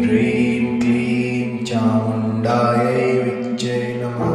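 A voice chanting a Kali mantra in repeated syllables, with short hissing consonants, over a steady low musical drone.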